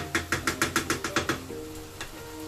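A wooden spoon knocking against a metal frying pan while stirring chickpeas and minced beef: about a dozen quick, sharp clacks, some eight a second, ending after about a second and a half. Background music with held notes plays underneath.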